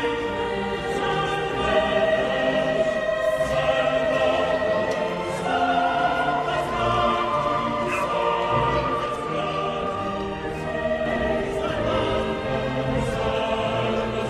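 Background choral music: voices singing long held, wavering notes.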